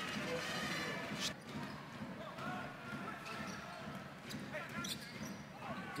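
Arena crowd noise under live basketball play, with a ball bouncing on the hardwood court and a few sharp knocks and squeaks from the action.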